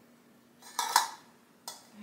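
A thin metal muffin tin knocking lightly on the counter as pizza dough is pressed into its cups: one short, louder knock about a second in, then a sharp click near the end.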